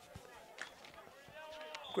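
Faint distant voices calling out across an open sports field, with a thin, steady high-pitched tone starting just before the end.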